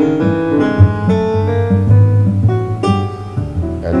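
Instrumental keyboard tune: held melody notes changing every half second or so over a steady bass line.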